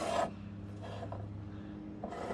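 A brief scrape of a metal D-ring tie-down being set down on wooden deck boards, then a faint steady low hum.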